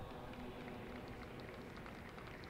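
Faint steady background noise with a low hum and a light scattered crackle: room tone between words.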